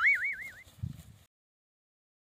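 A whistle-like comic sound effect: a high tone whose pitch wobbles rapidly up and down, fading out within the first second. A soft low thump follows, then dead silence.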